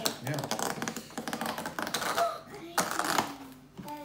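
Rapid, irregular crackling clicks of plastic and cardboard toy packaging being pulled open and handled, easing off near the end.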